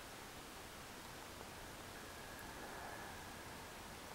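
Faint, steady hiss with no distinct events: quiet room tone.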